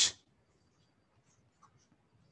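A spoken word trails off, then near silence broken by a few faint, light taps of a stylus writing on a tablet screen.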